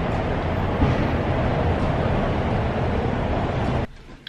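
Steady city street traffic noise, a low rumble with a hiss over it, with one short knock just under a second in; it cuts off abruptly just before the end.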